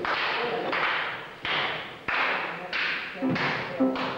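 A rhythmic series of sharp swishing strokes, each one fading quickly, about three every two seconds. Pitched tones join near the end.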